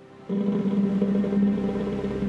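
Whoopee cushion screamer inside a vacuum chamber, blown by the breath held in a bicycle inner tube, giving a steady fart-like buzz that starts a moment in and trails off near the end. It is audible because the released air carries the sound out through the vacuum.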